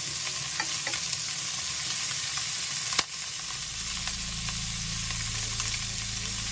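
Chicken wings sizzling in hot oil in a frying pan, with light clicks of tongs turning the pieces. A sharper click comes about halfway through, and a low steady hum comes in just after it.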